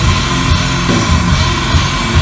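Heavy metal band playing live and loud: distorted guitars, bass and drums, recorded on a phone in the audience.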